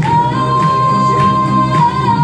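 A woman singing into a microphone over amplified backing music with a steady beat. She holds one long high note that slides up at the start and stays level for most of the two seconds.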